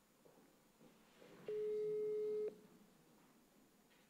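Telephone ringback tone heard by the caller while an outgoing call rings at the other end: one steady single-pitched tone about a second long, about a second and a half in, with the line quiet around it.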